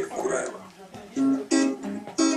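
Strummed acoustic guitar starting up about a second in, the opening chords of a song.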